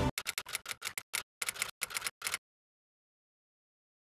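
A quick, irregular run of about ten short clicks and ticks over the first two and a half seconds, then dead silence.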